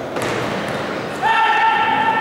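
Futsal ball thudding on a wooden indoor court over echoing crowd voices in a gym hall. Just past halfway, a single steady held tone starts and carries on.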